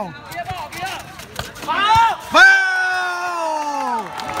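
A man's voice shouting in celebration of a goal: a short call near the middle, then one long drawn-out shout that slowly falls in pitch.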